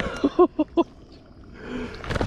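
A man laughing: four quick, short bursts in the first second.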